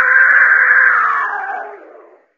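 A cat's long, loud yowl, held for about two seconds and fading away near the end.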